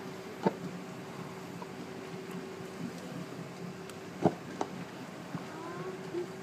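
Steady hum of a tour boat's engine under way, with a few sharp clicks, one about half a second in and two close together about four seconds in.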